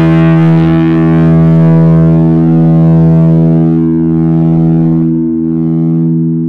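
Distorted electric guitar sustaining one long held tone that rings on steadily, its bright upper overtones slowly fading away.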